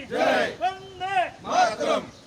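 Men's voices shouting a slogan in chant-like calls, three or four short loud shouts with rising-and-falling pitch that stop abruptly at the end.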